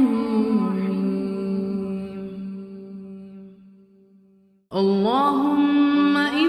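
A man's voice chanting an Arabic dua unaccompanied, holding a long drawn-out note that steps down in pitch early on and fades away over about four seconds. After a short silence, a new phrase begins with a rising glide and holds a note again.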